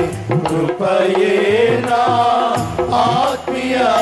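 Live worship music with no singing: a melody line that bends in pitch over bass and a steady drumbeat.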